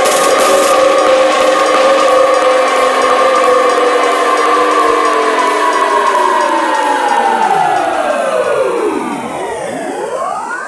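Beatless synthesizer passage in a neurofunk drum and bass track: a sustained chord of several whistle-like tones that, over the last few seconds, slides steeply down in pitch while rising sweeps begin near the end.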